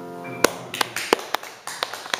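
The last piano chord dies away, then a small audience begins clapping, sparse and uneven, about half a second in.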